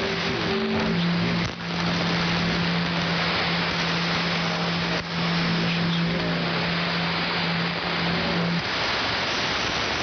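Shortwave receiver on the 75-metre AM band putting out loud static hiss between transmissions, the band noisy under poor propagation conditions. A steady low tone runs under the hiss and stops near the end, and the hiss dips briefly twice.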